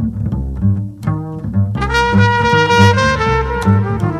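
Live jazz-electronic duo music: a bass plays a repeating low pattern throughout, and about halfway in a trumpet enters on a long held note, then steps down through a few lower notes near the end.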